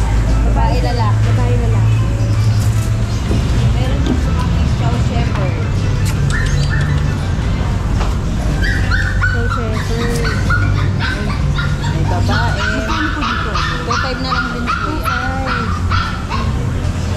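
Puppies yipping and whimpering over background music. The short high cries come thick and fast in the second half.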